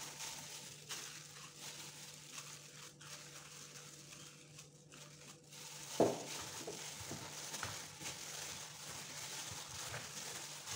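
A plastic-gloved hand kneading soft butter into sticky bread dough in a metal bowl: faint crinkling of the glove and squelching of the dough. A low steady hum runs underneath, and one brief louder sound comes about six seconds in.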